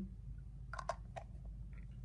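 A few light plastic clicks and taps, bunched together in the middle, from a fragrance-oil dispenser's plastic refill holder and dip tube being handled over a plastic refill bottle.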